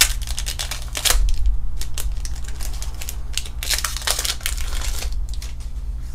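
Foil Pokémon booster pack wrapper crinkling and tearing as it is opened, in bursts of sharp crackles, over a steady low hum.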